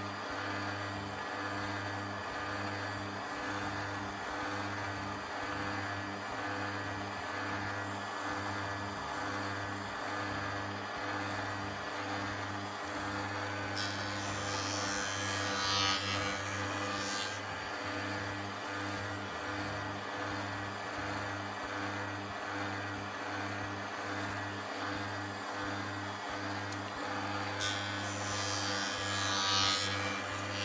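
A steady low electric hum, with two short bursts of hiss, one about halfway through and one near the end.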